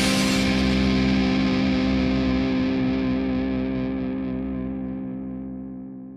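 A song's final chord on distorted electric guitar, held and left to ring, fading away steadily and growing duller as it dies out.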